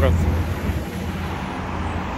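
A car passing close by on a town street, its engine and tyre rumble loudest in the first second, then settling into steady traffic noise.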